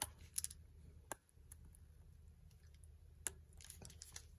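A few faint, short clicks and some rubbing as a Nikon D3 camera body with a lens-mount adapter fitted is handled and turned over; otherwise near quiet.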